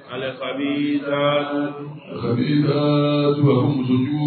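A man chanting Arabic in a slow, melodic recitation style, holding long notes in two drawn-out phrases with a brief breath about two seconds in.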